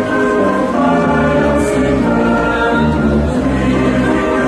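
Mixed choir singing a slow hymn in held, sustained chords: the entrance hymn at the start of a Catholic Mass.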